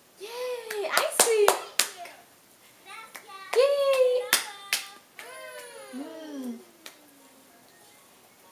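Several sharp hand claps, a quick run in the first two seconds and a pair around the middle, among high-pitched voices and music from a children's cartoon on the TV.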